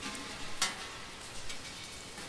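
Water dripping in a large limestone cave: a steady patter of drops with scattered sharp drip impacts, one louder drop about half a second in.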